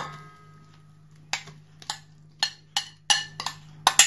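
A dozen or so sharp knocks and clicks, irregular and coming faster near the end, as crumbled fresh cheese is scraped and tapped out of a glass bowl into a stand mixer's stainless steel bowl. A steady low hum runs underneath.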